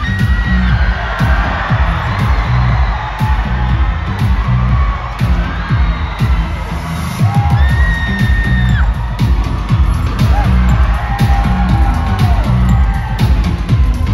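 Loud K-pop dance track with a heavy bass beat, played over a concert sound system, with fans in the audience screaming and cheering over it several times.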